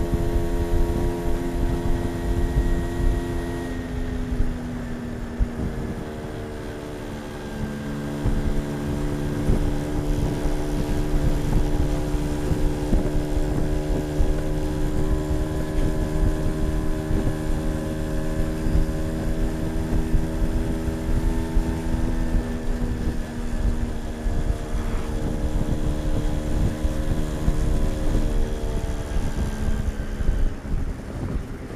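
Polini-tuned small two-stroke engine running under way, its pitch dropping about four seconds in and picking up again about seven seconds in, then holding steady with another change in pitch about twenty-two seconds in. Wind noise on the microphone.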